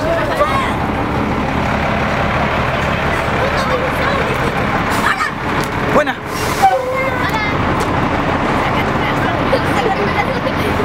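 Bus engine idling steadily under the chatter of a group of girls.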